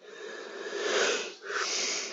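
A man's noisy breath close to the microphone: one long breath of about a second and a half, then a shorter one near the end.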